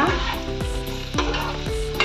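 Diced onion, potato and carrot sizzling in hot oil in a nonstick kadai as a spatula stirs them, lightly frying.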